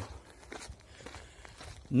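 Faint footfalls of a person jogging.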